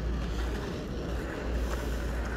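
Wind rumbling on a phone microphone, a steady low buffeting that swells and eases slightly, over a faint outdoor city background hum.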